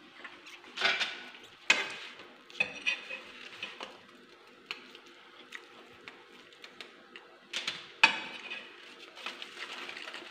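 A fork and plate clinking while someone eats toast, with a few short eating noises in between; two sharp clinks stand out, one near two seconds in and one about eight seconds in.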